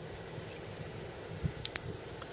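Two hard-plastic 9-volt battery snap connectors being handled and snapped together back to back, giving a few small clicks with a sharp pair of clicks about one and a half seconds in.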